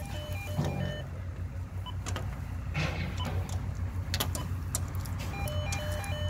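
Door intercom panel's stepped electronic beep tones, its response to a key fob that does not open the door, dying out in the first second. A low steady rumble then fills the rest, with a few sharp clicks.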